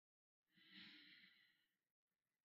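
A faint, sigh-like exhale by a man, lasting about a second and starting about half a second in.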